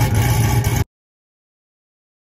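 Electric fan running with a steady low hum and rushing air, cut off abruptly just under a second in, followed by silence.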